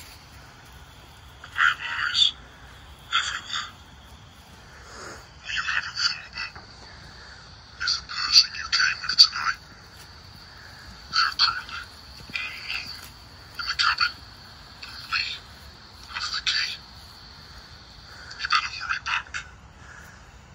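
Footsteps crunching through grass and dead leaves, in uneven short runs of steps, over a faint steady high-pitched tone.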